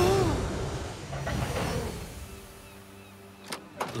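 Cartoon railway sound effects: the rumble of coaches after a collision fades away over the first two seconds or so, and two sharp clicks of carriage doors being flung open come near the end.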